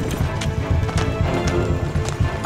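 Dramatic orchestral score over a horse's hooves clopping on hard ground.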